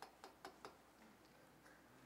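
Near silence with a short run of faint, quick ticks, about five a second, that stop less than a second in, leaving only room tone.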